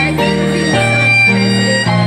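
A violin and an electronic keyboard playing a tune together. A bowed violin melody runs over held keyboard chords and bass notes, which change about every half second.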